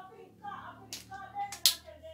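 Sharp clicks from a tripod light stand as its folding legs are spread open: one about halfway through and a louder one shortly after, over voices in the background.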